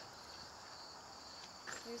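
A faint, steady, high-pitched chorus of insects, an unbroken trill.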